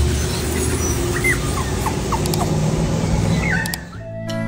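Outdoor background noise with a steady low rumble and a few short, high, bending squeaks. These come from small dogs playing on a lawn.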